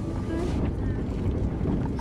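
Steady low rumble of a 4x4 heard from inside its cabin as it drives slowly along a rough dirt track, engine and running gear mixed with a rushing noise on the microphone.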